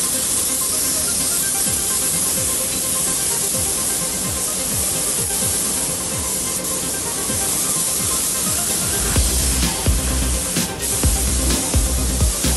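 Spray gun hissing steadily as it sprays two-pack primer onto a motorcycle fairing, under electronic background music; a heavy, pulsing low beat joins about nine seconds in.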